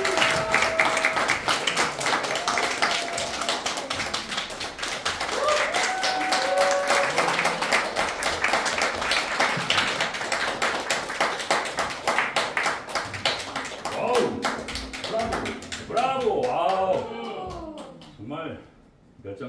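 Audience applauding with steady, dense clapping after a sung performance, with a few voices calling out over it; the clapping thins out in the last couple of seconds as a man starts to speak.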